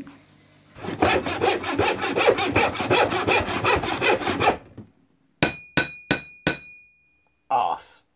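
Rhythmic rasping strokes, like sawing, for about four seconds. Then four sharp ringing metallic strikes follow in quick succession, and a short burst comes near the end.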